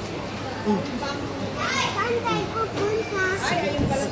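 A young child's voice, squealing and babbling, with two higher squeals near the middle and toward the end, over background voices.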